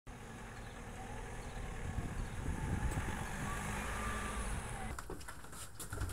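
Low outdoor rumble of a vehicle going by, swelling around two to four seconds in, with a faint gliding tone on top; a few sharp clicks near the end.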